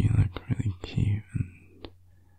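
A man whispering softly for about a second and a half, with two sharp clicks, over a steady low hum.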